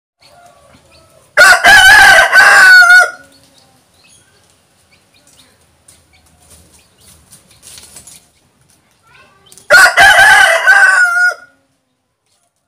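Rooster crowing twice, several seconds apart. Each crow is loud, lasts a little under two seconds, and ends on a note that falls away.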